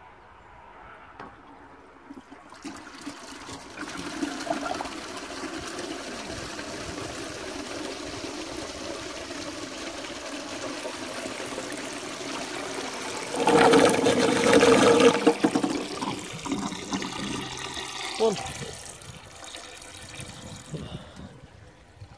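1939 Bolding automatic urinal cistern (made by T. Ventom & Son) flushing itself through its siphon. Water starts rushing out a couple of seconds in and runs steadily, surges loudest about two-thirds of the way through, then dies away.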